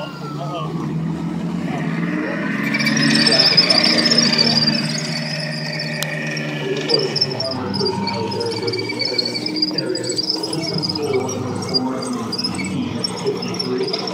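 Armoured vehicles driving past on a track: a Saracen armoured personnel carrier with its straight-eight petrol engine, and a tracked Abbot self-propelled gun. The engines grow louder a few seconds in, and a high squeal, typical of steel tracks running, goes on from then to the end.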